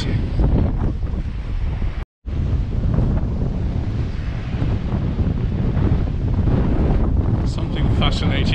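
Strong wind buffeting the microphone over the wash of surf from a storm-rough sea. The sound cuts out for a moment about two seconds in.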